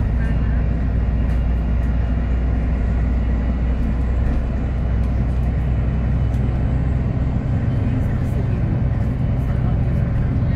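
VDL SB200 single-decker bus heard from inside the passenger saloon while driving: a steady low engine and road drone with light clicks and rattles from the body. About seven seconds in the deepest part of the drone fades and a higher engine note takes over.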